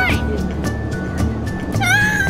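A child's high-pitched squeal, sweeping upward in pitch, twice: at the start and again near the end, over music playing throughout.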